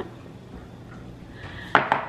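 A bowl set down on a marble countertop, a single sharp clack near the end with a short ring after it. Before it, only quiet room tone.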